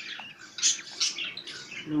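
Lovebird chicks, about two weeks old, giving a quick run of short, high cheeps.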